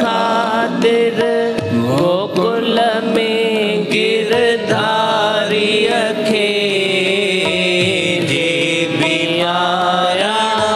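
Devotional song: a voice singing a bhajan over instrumental accompaniment with a steady sustained drone.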